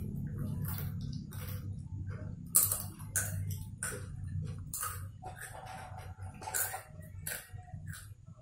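Irregular light clicks and ticks of close handling noise, a few to the second, over a low steady hum.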